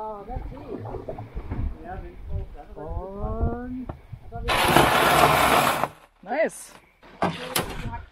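Aluminium canoe hull grinding up onto a gravel shore for about a second and a half as it lands, the loudest sound here, with voices around it.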